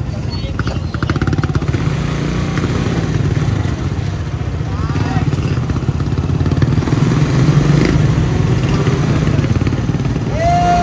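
Small motorcycle engine running steadily at low road speed, a low hum with an even, rapid pulse.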